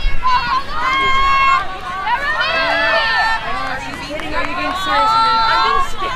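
Several high-pitched girls' voices shouting and calling out across the field, overlapping one another throughout.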